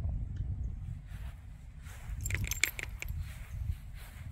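Metal tags and leash clip on a small dog's collar jingling briefly, a little over two seconds in, over a low steady rumble.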